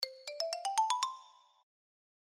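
A short jingle of about eight quick, bell-like notes climbing step by step in pitch, then ringing out and fading away within about a second and a half.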